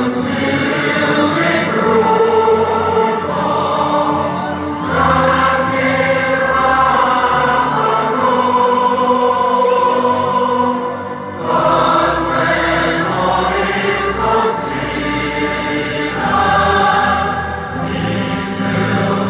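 A choir sings a slow, solemn mock national anthem in long held phrases, with a brief dip about eleven and a half seconds in.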